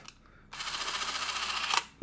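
Braun 400 Motor Zoom Reflex Super 8 cine camera running with a film cartridge loaded: a steady motor whirr with a rapid even flutter from the shutter and film claw. It starts about half a second in and stops just before the end.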